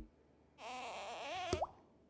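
Cartoon sound effect of a cookie being dunked in a glass of milk: a wavering tone with hiss for about a second, ending in a sharp plop with a quick upward chirp.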